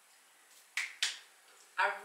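Two short, sharp claps of a pair of hands, about a third of a second apart.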